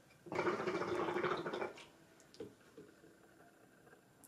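Hookah water base bubbling as smoke is pulled through the hose, a dense gurgle lasting about a second and a half before fading to a few faint sounds.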